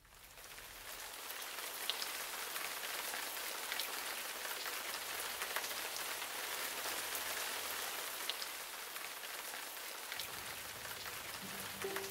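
Steady heavy rain falling, an even hiss that fades in over the first second or so, with occasional sharper individual drops.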